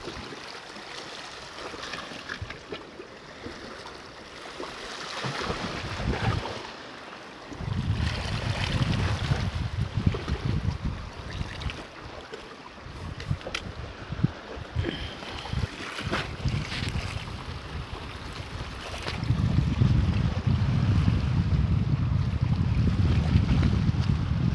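Sea water washing and lapping against the rocks of a rocky shoreline, with wind buffeting the microphone in gusts, strongest from about eight to eleven seconds in and again over the last five seconds.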